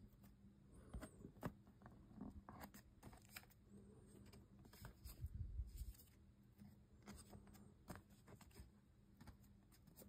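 Near silence with faint, scattered taps and rustles of a cardboard collection box being handled.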